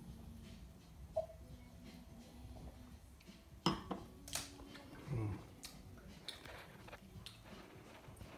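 A wine glass being handled in a small room: a few light clicks and knocks spread over several seconds. A short 'mm' comes a few seconds in as the wine is tasted.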